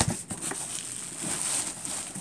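Plastic packaging crinkling and cardboard rustling as a plastic-wrapped drive enclosure is pulled out of a shipping box, with a few small knocks.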